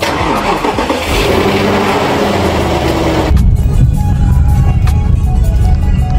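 SUV engine starting: it cranks, catches and revs up, then settles into a loud, steady run. About three seconds in it cuts off suddenly, and background music with a heavy bass beat takes over.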